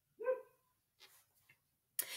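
A dog barks once, a single short bark.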